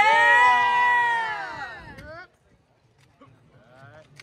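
One person's long, high-pitched yell, held for about two seconds, rising and then falling away before it cuts off; then near silence with a few faint clicks.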